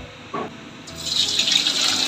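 Beef tapa going into very hot cooking oil in an aluminium wok: a sudden loud sizzle starts about a second in and keeps on, the oil frying hard.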